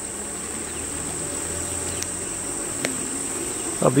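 Crickets chirring at dusk in a steady high-pitched trill, with a couple of faint clicks partway through.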